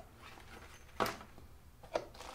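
Quiet handling noise: a sharp tap about a second in and another near the end as a nylon carrying case is set aside and a cardboard box is handled.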